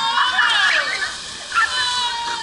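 High-pitched voices shouting and calling out, with long drawn-out yells that slide down in pitch, and a splash of a slide rider hitting the pool near the end.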